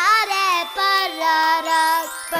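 A high, child-like voice singing a children's song over light music. Some notes glide and others are held.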